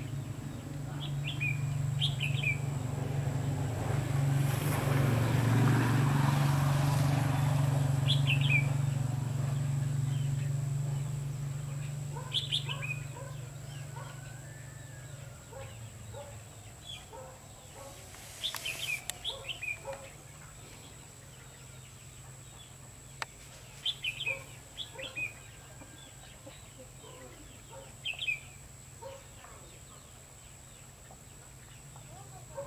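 Red-whiskered bulbuls chirping in short, bright phrases every few seconds. Softer low notes come in from the middle on. A low rumble swells and fades over the first ten seconds or so and is the loudest sound.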